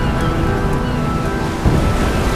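Film score with sustained notes giving way to storm-at-sea sound: a dense low rumble of wind and heavy waves, with a deep boom near the end.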